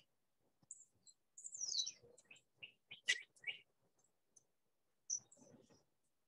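Faint birdsong: scattered high chirps, a falling whistled note about a second and a half in, and a quick run of short notes around the three-second mark.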